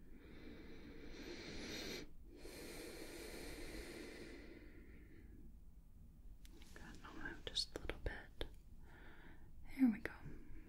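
Two long, soft breaths close to the microphone in the first half, then a few small clicks and a brief voiced sound near the end.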